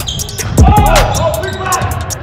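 Basketball play on a gym floor: a ball bouncing and short sneaker squeaks on the hardwood, under background music with a quick steady beat.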